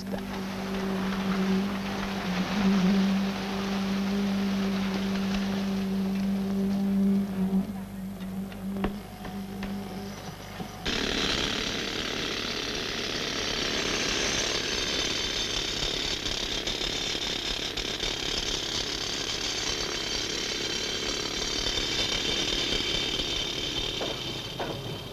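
Construction-site machinery running with a steady hum for about the first ten seconds. The sound then cuts abruptly to a louder, hissier machine noise that carries on to the end.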